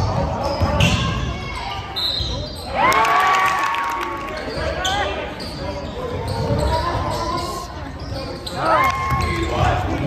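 A basketball bouncing on a hardwood gym floor during a game, with players and spectators calling out in the echoing hall.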